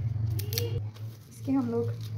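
Small knife peeling the dry papery skin off a red onion: a few crisp scratches and clicks in the first second, over a steady low hum.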